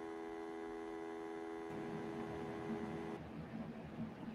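Steady electronic hum made of several stacked tones on a live call's audio line, cutting off about three seconds in and leaving faint background hiss.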